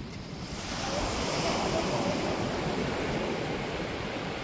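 Surf washing on a sandy beach, swelling about a second in and slowly easing off, with some wind on the microphone.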